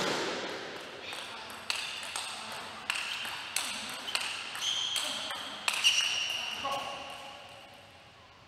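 A table tennis rally: the ball is struck by the paddles and bounces on the table in about a dozen sharp, ringing clicks, roughly two a second, with the hall's echo behind them. The rally stops near the end and the sound fades.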